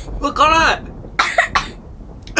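A short vocal outburst, then a cough a little over a second in: a reaction to the burn of an extra-hot curry potato chip just eaten.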